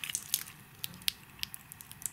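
Faint, scattered clicks, about eight of them, with light rustling as fingers handle a stainless steel watch bracelet: links and folding clasp.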